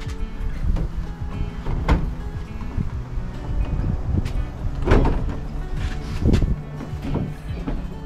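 Background music, over which a sheet-metal gas hot water heater casing knocks and scrapes against the cut opening in a van's steel side panel a few times as it is pushed in, loudest about five seconds in.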